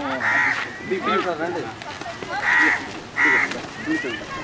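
A crow cawing three times in short, harsh calls, with people talking in between.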